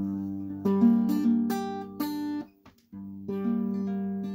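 Acoustic guitar with a capo on the first fret playing an F-sharp minor barre shape (244222): a chord ringing with further notes struck over it. It breaks off briefly about two and a half seconds in, then the chord and pattern start again.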